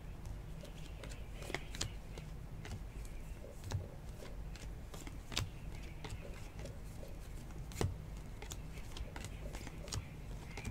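Baseball trading cards being slid one by one off a handheld stack, giving soft irregular clicks and card-on-card slides over a low steady hum.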